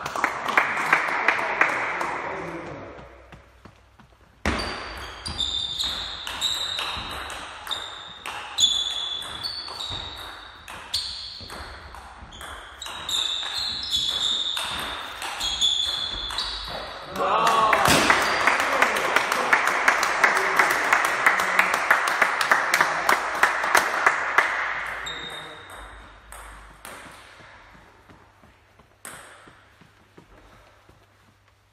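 Table tennis rallies: the plastic ball clicks sharply off the bats and the table in quick runs, and shoes give short high squeaks on the wooden hall floor. A stretch of denser, louder noise runs from a little past the middle until late on.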